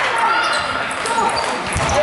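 Table tennis rally: the ball clicking sharply off the bats and the table a few times, with voices talking in the hall.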